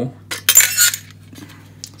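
Metal mounting bracket scraping and clinking as it is worked out of the LED wall light's housing, with one short, loud scrape about half a second in and small clicks around it.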